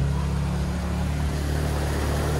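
Can-Am side-by-side engine running steadily, a low even drone.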